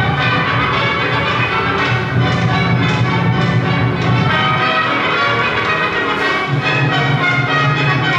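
Lively dance music from an archival film of a Soviet army song-and-dance ensemble, played back over loudspeakers in a lecture hall, running loud and steady.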